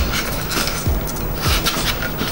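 Foam board creaking and crackling as a scored panel is bent up along its opened score cut, with fingers rubbing on the foam; a run of short crackles.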